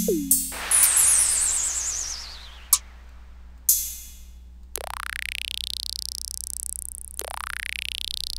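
Single drum-machine samples from the Acoustica Studio Drums electronic kit, previewed one after another. First comes a tom hit that drops in pitch, then a long hissing effect with a falling, warbling whistle, then a short cymbal crash about four seconds in. Near the end an electronic vibra-slap sounds twice, a rising swoop that settles into a steady high hiss.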